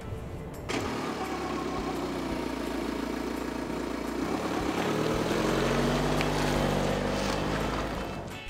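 Car engine sound effect of a car driving off. It starts about a second in, climbs in pitch midway, then holds steady and fades near the end.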